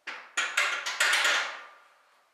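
A quick run of knocks and clatter from a weight bench and barbell as the lifter rolls back over the bench, four or five sharp hits in about a second, then dying away.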